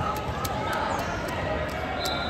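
Many voices talking at once in a reverberant gym, with a basketball bouncing on the court.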